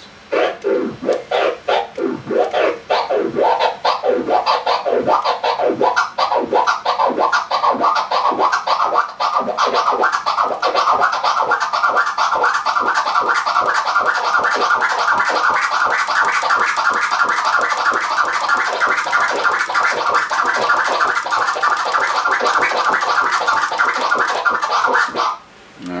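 Flare scratch on a turntable: a record sample is pushed back and forth by hand while the crossfader clicks it out once in the middle of each stroke. It starts slowly and speeds up into a fast, even run, the pitch of the strokes rising as it quickens, then stops abruptly near the end.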